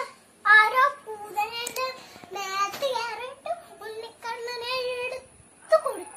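A young girl singing in a high voice: a string of short phrases with held, wavering notes and brief pauses between them.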